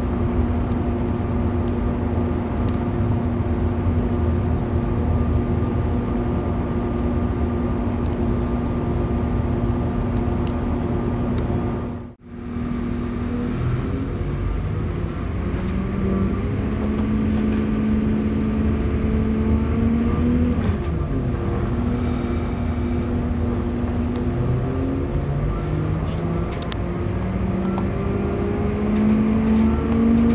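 Interior sound of a Class 197 diesel multiple unit: a steady engine drone, a brief dropout about twelve seconds in, then the engine note rising as the train accelerates, dipping once around twenty seconds in and climbing again toward the end.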